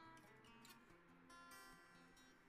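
Faint background music: an acoustic guitar playing soft plucked notes.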